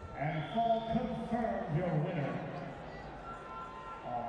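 A man's voice speaking or calling out, the words not made out, over the steady background noise of an arena.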